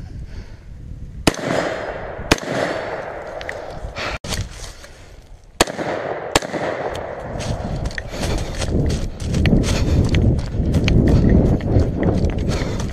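AR-15 rifle shots, about four sharp cracks spread over the first six seconds or so, followed by the shooter running through dry leaves with rustling and rifle handling noise.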